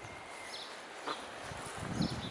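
Slow footsteps on grass, soft low thuds, with a few short high bird chirps.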